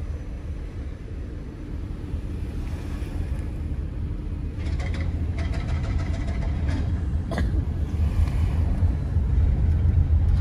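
Car cabin noise while driving: a steady low rumble of engine and tyres on the road, growing louder toward the end as the car picks up speed. A single click about seven seconds in.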